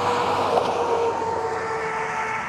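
A motor vehicle passing close by on the road: a steady rush of tyre and engine noise with a faint steady drone in it.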